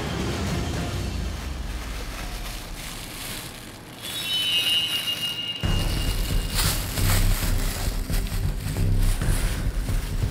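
Background music from the film's soundtrack. One passage fades down, a brief high shimmering tone comes in, and about halfway through a new bass-heavy, rhythmic track starts abruptly.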